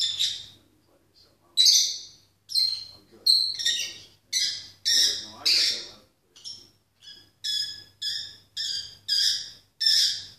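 Peach-faced lovebird singing: a long run of short, shrill chirps and squawks, about two a second.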